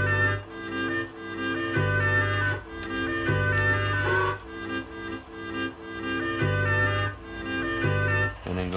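Sampled music playing back from an Akai S2000 sampler: a low bass line that comes and goes under held chords.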